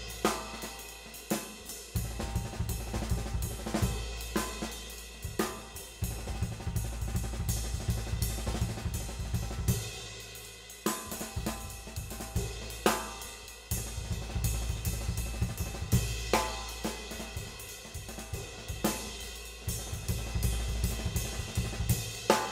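Drum kit played in a jazz swing feel: a nine-stroke fill moving between the ride cymbal and the snare drum, with bass drum underneath, played over and over with sharp accents every second or two.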